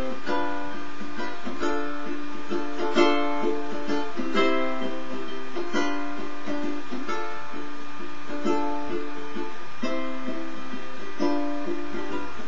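Lanikai ukulele strummed in a steady rhythm of chords, played on its own with no singing.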